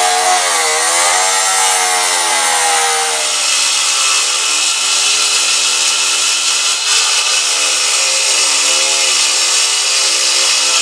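Cordless cut-off saw grinding through steel with an abrasive wheel, its motor whine wavering in pitch under load. About three seconds in it gives way to a Milwaukee M18 cordless cut-off saw cutting wet through a granite slab, its whine dipping and recovering as the blade loads.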